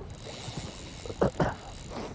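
Steady rushing hiss of flowing river water, with two short, louder low sounds a little past the middle.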